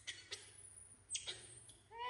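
Baby macaques giving a few brief, very high-pitched squeals, the second, about a second in, drawn out as a thin shrill whine toward the end.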